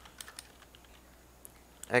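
A few faint, isolated computer keyboard keystrokes, single sharp clicks spaced apart.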